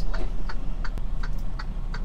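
Turn-signal indicator clicking in a steady, even run inside a semi-truck cab as the truck makes a turn, over the low running of its diesel engine.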